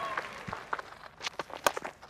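A few soft footfalls and knocks, then the sharp crack of a willow cricket bat striking the ball, the loudest sound, about one and a half seconds in, over faint crowd noise.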